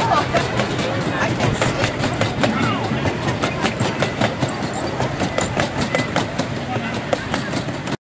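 Wheels of a 5/12-scale riding train's passenger cars rolling past, clicking regularly over rail joints in a fast, even run, with passengers' voices mixed in.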